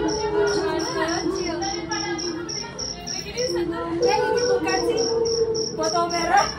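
Cricket chirping in a fast, even rhythm of about five chirps a second, under a held tone that steps up and down in pitch.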